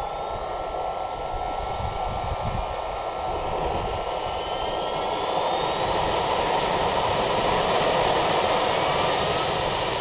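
Lambert Kolibri T50 model jet turbine spooling up: a roar that grows gradually louder, with a high whine rising steadily in pitch.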